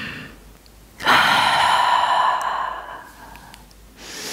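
A woman's releasing breath: the tail of a deep inhale, then about a second in a loud, sighing exhale that lasts about two seconds and tapers away.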